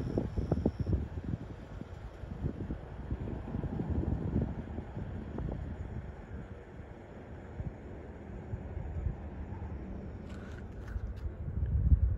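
Wind rumbling on the phone's microphone outdoors, a low noise that gusts up and down unevenly.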